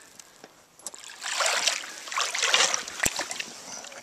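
Legs wading through shallow creek water, with two bouts of sloshing and splashing as he steps forward about a second in. A single sharp click comes near the end.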